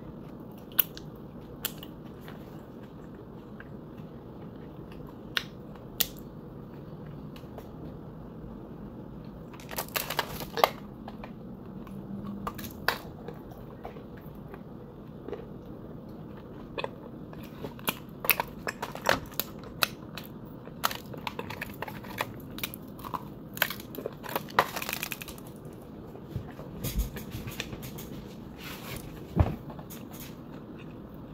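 Chunks of dry clay being bitten and crunched: scattered sharp cracks, sparse at first, then clustering into bursts of crunching about ten seconds in and again from about eighteen seconds on, over a steady low background noise.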